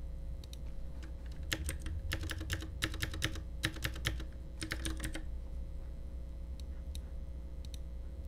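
Typing on a computer keyboard: a quick run of keystrokes entering a number, from about one and a half seconds in to about five seconds, then a few fainter clicks later, over a low steady hum.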